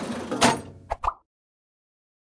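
An advertising whoosh sound effect that swells to a sharp peak about half a second in, followed by two short clicks, after which the sound cuts out to silence.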